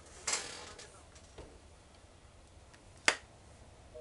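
Small handling noises from a mobile phone being held and moved: a brief rustle just after the start, a faint click, and a single sharp click about three seconds in.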